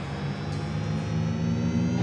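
Electronic synthesizer drone: a stack of steady, sustained tones that swells steadily louder and creeps slightly up in pitch.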